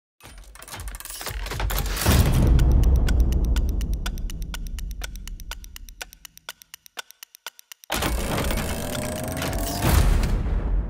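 Produced intro sound effects: a rising swell into a heavy impact about two seconds in, then a rapid run of ticks, several a second, that fade away. After a brief pause comes a second loud hit with a rising tone, building to another impact at the end.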